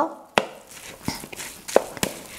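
Wooden spoon knocking against a glass mixing bowl while stirring a moist ground-meat and bread stuffing. It gives three or so sharp clicks, the loudest about a third of a second in.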